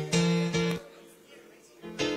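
Live chorus music with a strummed accompaniment: a chord struck twice in quick succession at the start, ringing for about half a second, then a quiet stretch, and another chord struck near the end.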